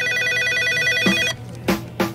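An electronic desk telephone ringing: one high ring of about a second and a half that cuts off abruptly. A short knock follows near the end as the handset is picked up.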